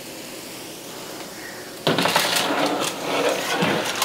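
A metal sheet pan of baked bacon scraping off the oven rack and clattering onto the stovetop about halfway in. The rough scraping rattle lasts under two seconds.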